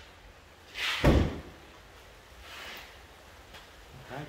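Car bonnet shut with a single loud slam about a second in, a short swish just before it as it drops.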